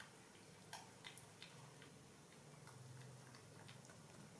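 Near silence, with a few faint, irregular clicks from young macaques eating and handling fruit.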